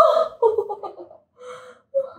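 A woman gasps and cries out, her pitch sliding up and down, as she reacts to a chiropractic neck adjustment. Two shorter breathy vocal sounds follow, about a second in and near the end.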